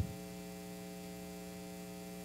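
Steady electrical mains hum, an unchanging low buzz with several overtones, with nothing else sounding.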